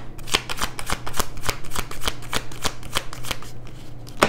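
Tarot deck being shuffled by hand: a fast, irregular run of sharp card snaps and riffles, several a second.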